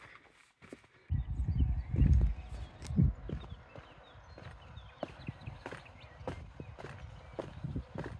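Footsteps on stone paving and stone steps: a walking rhythm of short taps and scuffs. From about a second in, wind buffets the microphone in a low rumble, loudest around two and three seconds in.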